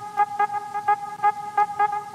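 Electronic end-screen music: a steady horn-like synth tone, several pitches held together, pulsed by short accents about four times a second.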